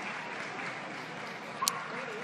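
Steady hiss of background hall noise, with one short sharp click near the end as a Holter monitor lead wire is snapped onto its adhesive electrode pad.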